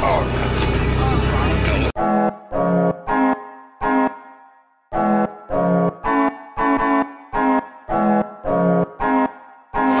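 Steady engine and road rumble inside a moving bus for about two seconds, then an abrupt cut to solo piano music: short, ringing notes or chords, about two a second, with a brief pause near the middle.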